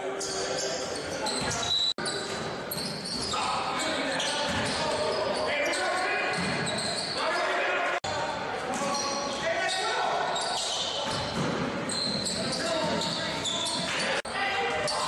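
Live game sound in a large, echoing gym: a basketball bouncing on the hardwood under indistinct shouting from players and spectators. The sound drops out abruptly for an instant twice, about two seconds in and again about eight seconds in.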